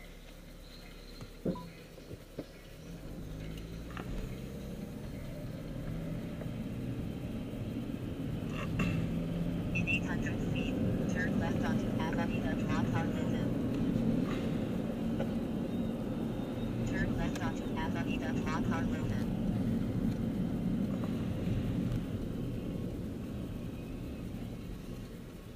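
A Honda car heard from inside the cabin pulling away: the engine note climbs over several seconds, then settles into a steady low engine and road rumble at cruising speed that eases off near the end. A single knock comes about a second and a half in.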